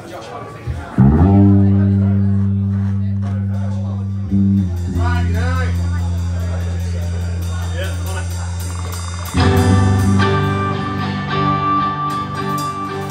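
Live rock band through amplifiers: two long, slowly fading low notes on electric bass and guitar, then the full band with drums comes in about nine seconds in.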